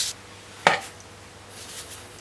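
Steam hiss from an aluminium pressure cooker's weighted regulator cuts off at the very start. About two-thirds of a second in comes a single sharp metal click as the weight is lifted off the vent pipe, at the end of the pressure-cooking time.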